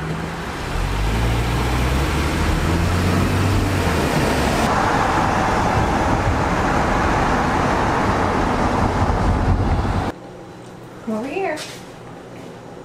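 Road and engine noise heard inside a moving car, loud and steady, with the engine note rising over the first few seconds as it picks up speed. It cuts off about ten seconds in, leaving a quiet room with a couple of short voice-like calls.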